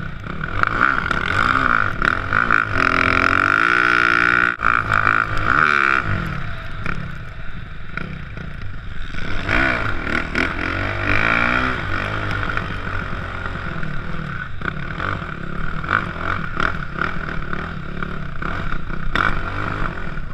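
A snow bike's dirt-bike engine being ridden hard, its revs rising and falling repeatedly as the throttle opens and closes, loudest in the first few seconds, heard close up from the rider's helmet.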